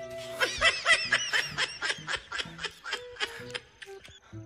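Rapid laughter, a quick run of short 'ha' pulses about five a second, over background music.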